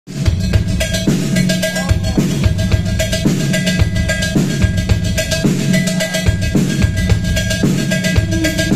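Live rock band playing an instrumental passage: drums keeping a busy, even beat over electric bass and electric guitar, with a steady ringing tone above. The music starts loud straight away.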